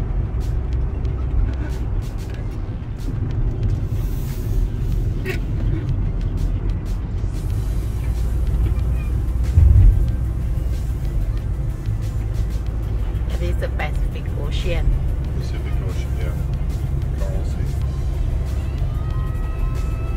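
Steady low road and engine rumble inside a moving Toyota Tarago minivan's cabin, with a single thump about halfway through.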